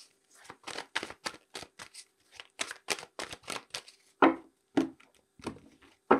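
A deck of tarot cards shuffled by hand: an irregular run of quick, soft card flicks and slaps, several a second, with two louder taps a little past the middle.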